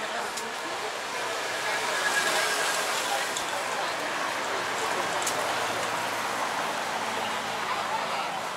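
Busy street ambience: indistinct voices of passers-by over a steady wash of traffic noise.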